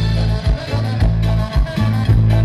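Loud amplified Latin dance music from a live band: a bass line changing notes about twice a second under a steady drum beat.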